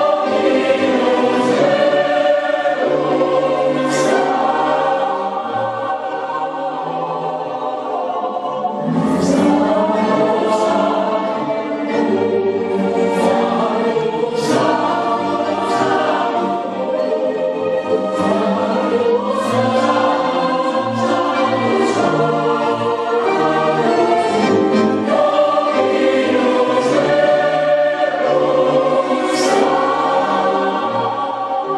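A mixed choir of women's and men's voices singing together in sustained, full chords.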